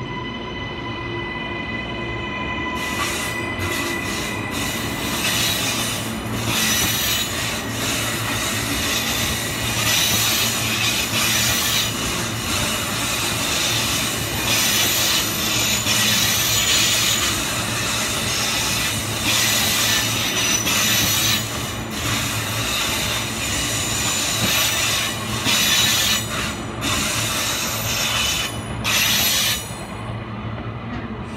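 Queensland Rail New Generation Rollingstock electric train passing close by, its wheels squealing and rumbling on the rails. A steady whine is heard for the first few seconds before the sound of the passing cars takes over.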